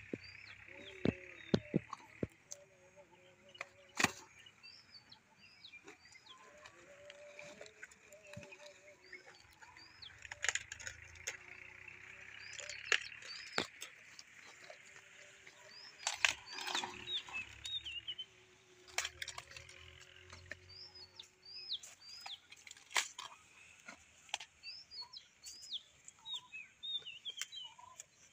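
Sharp snaps and cracks, some loud, of cauliflower stalks and leaves being cut and broken off during harvesting. Small birds chirp in short clusters of quick notes throughout.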